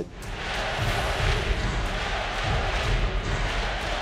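Basketball arena crowd cheering, a steady, loud roar of many voices with no single voice standing out.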